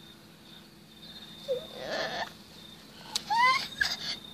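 A toddler's brief high-pitched babbling: a soft sound about halfway through, then a rising squeal near the end, just after a sharp click.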